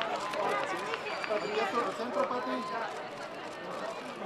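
Indistinct chatter of several overlapping voices: a crowd of photographers and onlookers talking and calling out at once.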